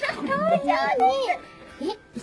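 A baby vocalizing in high, wavering coos that rise and fall, dying away about a second and a half in.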